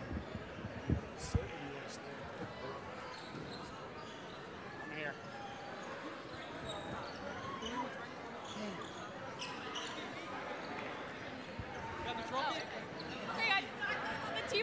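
A basketball bouncing a few times on a hardwood gym floor near the start, over a steady hubbub of indistinct crowd voices in the gym.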